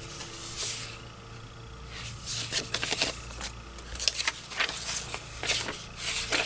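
Old paper and card sheets rustling and sliding against each other as they are handled and shuffled, quiet at first, then a run of short crisp rustles and flicks from about two seconds in.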